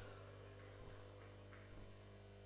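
Very quiet steady electrical mains hum, a low drone with no other events.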